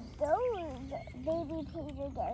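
A small child's voice: one rising-and-falling call about half a second in, then a few short babbled syllables.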